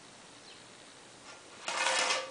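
Faint room tone, then near the end a brief, loud scraping rustle of a ruler being moved across the kraft pattern paper.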